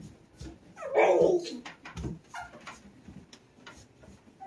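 A single short cry that falls in pitch, about a second in, with soft scattered taps around it.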